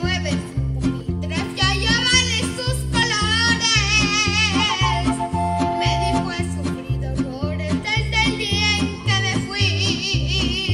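A boy singing into a microphone with wide vibrato over backing music with a steady bass beat. He holds a long wavering phrase through the middle and starts another near the end.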